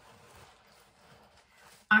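Faint rustling and handling of a mini backpack and the small items being taken from it, then a woman begins to speak right at the end.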